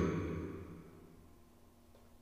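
A man's voice trailing off and fading out over the first second, then near silence.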